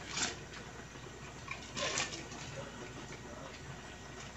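Metal ladle scraping cooked pasta out of a plastic colander into a pot of soup: a couple of short, soft scrapes, one at the start and one about two seconds in.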